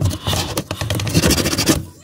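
A red plastic toy rubbed and scraped over corrugated cardboard in quick scratchy strokes, scrubbing at a crayon scribble to clean it off; the scratching dies away just before the end.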